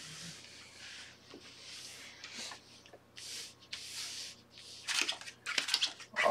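Playing cards being drawn from a shoe and slid across a felt blackjack table: a series of short, soft swishes, then a few sharp clicks near the end.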